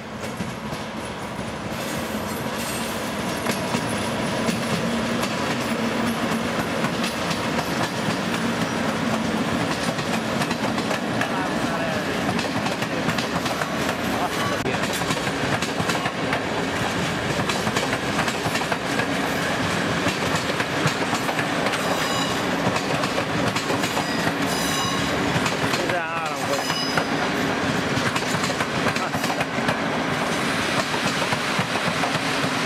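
A passenger train hauled by an electric locomotive runs past close by, its wheels clattering over the rail joints. The sound builds over the first few seconds as the train arrives, then holds steady as the coaches roll by. A few short high squeals come near the end.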